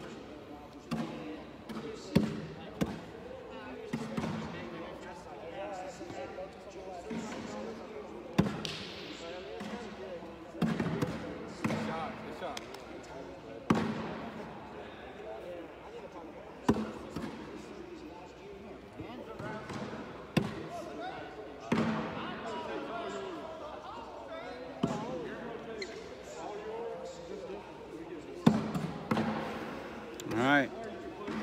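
Cornhole bags landing on a wooden board with hollow thuds, a dozen or so at irregular gaps of one to four seconds, in a hall that echoes, over background chatter.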